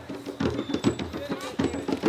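Drumming at an outdoor gathering, with people's voices talking over it.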